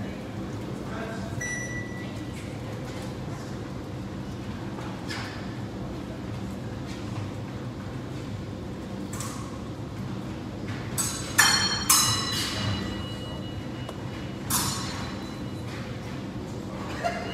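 Épée blades clashing: a quick cluster of sharp metallic clinks that ring on briefly at several high pitches about two-thirds of the way in, another ringing clink near the end, and a few softer taps before them.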